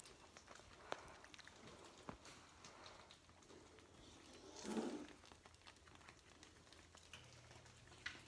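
Near silence with faint handling noise: soft clicks and the rustle of a fleece blanket being shifted, with one brief louder rustle a little past halfway.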